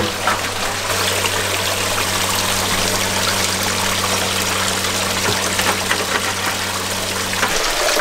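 Water running and splashing through a Golden Dirt Bags Sluicafina sluice box as pay dirt is washed over its riffles and mesh. A steady low electric hum, most likely the recirculating pump, runs underneath and cuts off suddenly near the end.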